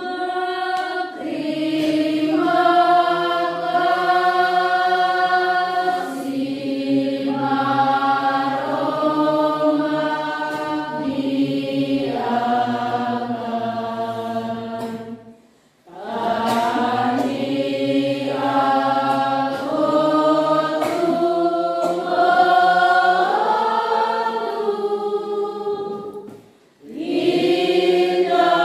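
A church congregation singing a hymn together, many voices holding long notes, with a brief pause between verses about halfway through and again near the end. It is the closing hymn after the final blessing of the Mass.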